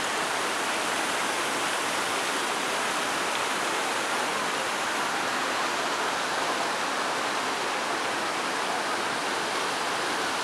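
Turia Fountain's jets and cascades splashing into the stone basin: a steady, unbroken rush of falling water.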